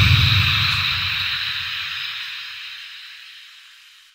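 Sound-effect blast on a logo intro dying away: a low rumble and hiss that fade steadily and are gone by the end.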